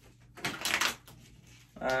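A deck of playing cards being riffle shuffled by hand: one quick, crisp burr of flicking cards lasting about half a second.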